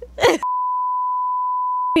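A steady electronic beep, one pure high tone held level for about a second and a half, edited in over otherwise silent audio; a brief spoken syllable comes just before it.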